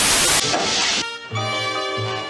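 A burst of TV-static hiss that drops sharply about half a second in and fades out by about a second. Cartoon soundtrack music with sustained pitched notes follows.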